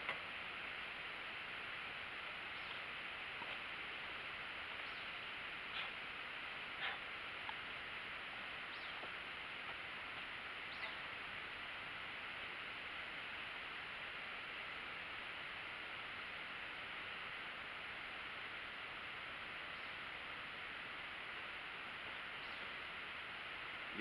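Quiet outdoor ambience with a steady hiss, and a few faint clicks of a plastic spatula against a steel pot as cooked greens are scooped out, mostly in the first half.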